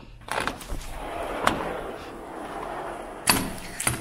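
Panels of a multi-panel sliding glass patio door being unlatched and rolled open along the track: a steady rolling rumble with a sharp click partway through, ending in a knock as the panels stack against the last door.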